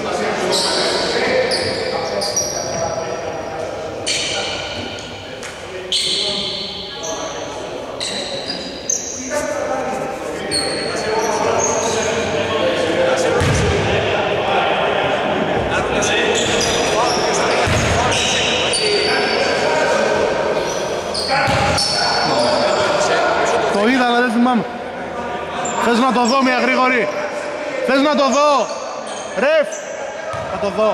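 Voices of players and people courtside chattering and calling out, echoing in a large gym, with a basketball bouncing on the wooden court a few times.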